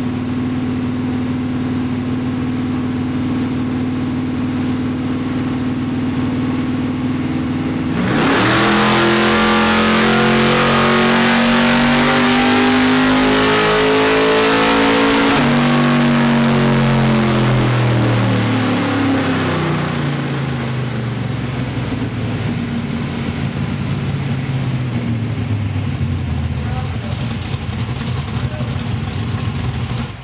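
A 289-cubic-inch small-block V8 in a 1964 Mercury Comet, running on Holley EFI on a chassis dyno, holds steady at about 2,200 rpm. About eight seconds in it goes into a full-throttle pull and revs up steadily to about 6,500 rpm. A little after fifteen seconds the throttle closes and the engine winds down over several seconds to a lower steady run.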